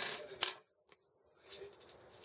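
A single sharp click about half a second in, then a brief total dropout of sound, then faint room tone.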